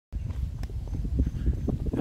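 Footsteps of a person walking on a paved road, a few irregular steps, over a low rumble of wind or handling on the microphone.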